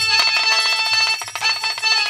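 Instrumental music: a bright melody of held notes on a keyboard instrument. The drumming stops just as it begins.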